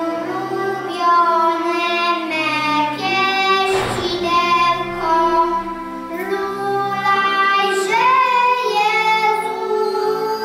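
Young children singing a song together over recorded music accompaniment, in held notes with a regular bass beat underneath.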